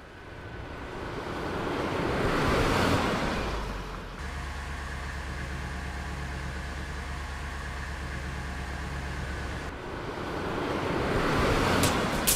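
Sound-effect vehicle pass: a rising whoosh as the van sweeps in, a steady low engine hum for about six seconds, then a second rising whoosh near the end.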